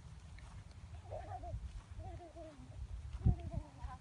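A faint high voice calls out three or four short times, wavering in pitch, over a low rumble of wind on the microphone.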